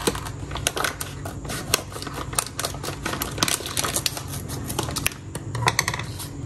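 Scissors snipping and plastic spice sachets crinkling as they are handled and cut open: a dense, irregular run of sharp clicks and crackles.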